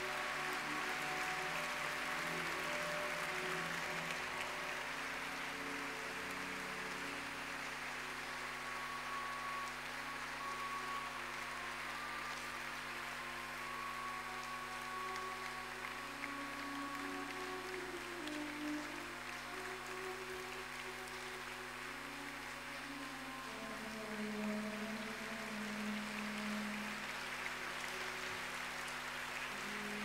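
Audience applauding steadily, with slow music of long held notes playing underneath.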